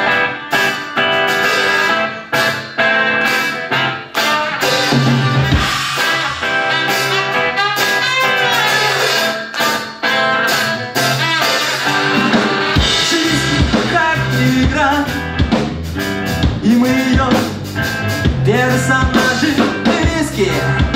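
Live ska-punk band playing: electric guitars, bass guitar and drum kit, with a singer's voice joining over the band in the second half.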